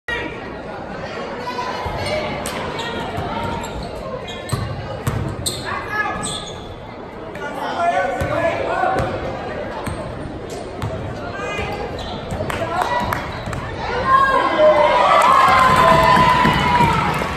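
Basketball bouncing on a hardwood gym floor during play, a series of sharp knocks ringing in a large hall, with voices in the background that grow louder near the end.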